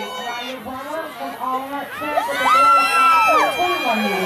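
Spectators cheering and shouting encouragement at runners, with a long high-pitched yell held for about a second in the second half.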